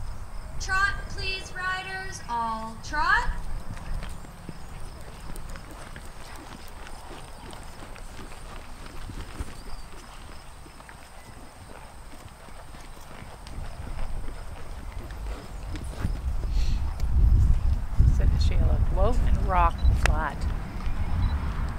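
Horses' hoofbeats on a sand arena as the horses walk and trot past close by, growing louder near the end.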